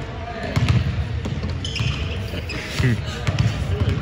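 Basketballs bouncing on a hardwood court, an irregular run of thuds, with a brief murmured 'mm' from a voice near the end.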